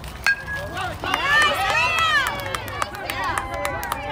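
A bat hits a pitched ball once with a sharp crack and a brief ring, then several spectators shout and cheer as the batter runs.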